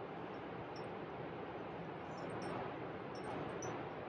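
A steady background hiss with a few faint, light metallic clinks scattered through it, typical of the climbing rack on a harness (nuts, cams and carabiners) knocking together as the climber moves.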